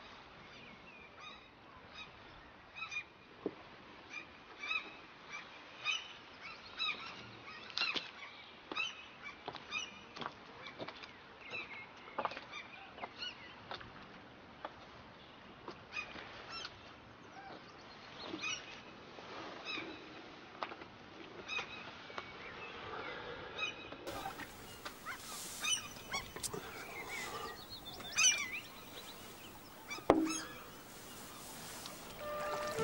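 Birds calling over and over in short, honking calls, about one or two a second, against a faint outdoor background.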